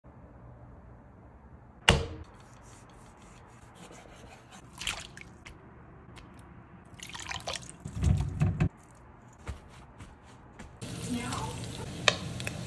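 Kitchen cooking sounds: liquid dripping and water around pork belly pieces in a wok, with a sharp knock about two seconds in and scattered clicks. A steady crackling sizzle of pork belly frying in the wok starts near the end.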